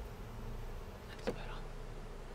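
A mass of honey bees buzzing in a steady hum.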